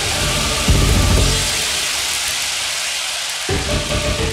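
Early hardcore (gabber) DJ mix at a breakdown: a loud wash of noise fills the track while the bass fades out, then the bass and the music drop back in about three and a half seconds in.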